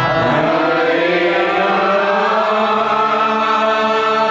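Kirtan chanting: several voices singing a mantra together over sustained harmonium chords.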